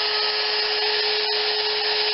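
Router mounted on a Sears Craftsman Router-Crafter running free, not cutting: a steady high-pitched whine over motor hiss.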